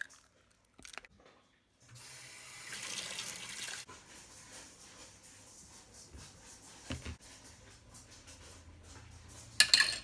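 Water running from a kitchen tap for about two seconds, followed by faint hiss and a few light knocks, with a couple of sharp clicks near the end.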